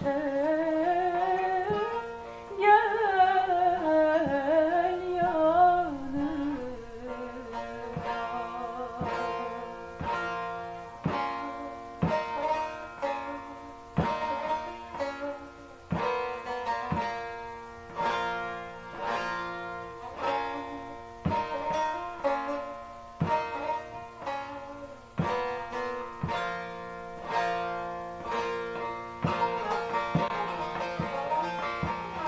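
A woman's voice sings a sliding, ornamented Turkish folk melody over bağlama (long-necked Turkish saz) accompaniment for the first six seconds or so. Then the bağlama plays alone, its plucked strings carrying an instrumental passage with a strong accent about once a second.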